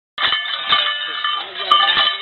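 Metal leg bells on imbalu dancers jangling and ringing in time with the dance, with a strong beat about twice a second.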